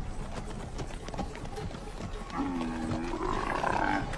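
Horses walking on dirt with a steady patter of hoofbeats. About halfway in, an animal lets out one long call that rises in pitch.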